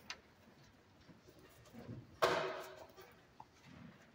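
String players settling in with their instruments before playing: small knocks and rustles of handling. About two seconds in comes a sudden louder knock with a brief ringing tone that dies away in under a second.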